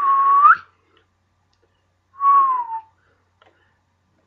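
A man whistling two short notes with his lips, a whistle of surprise: the first holds steady and then rises sharply at its end, and the second, about two seconds later, slides downward.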